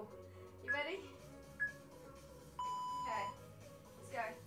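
Workout interval timer beeping out the end of a rest countdown: two short high beeps about a second apart, then a longer, lower beep near the end that signals the start of the next work interval.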